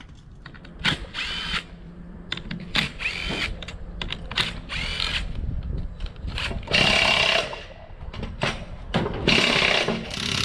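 Power tool running in about six short bursts, each one winding up in pitch, spinning the lug nuts off a race car's wheels. The last two bursts are the loudest.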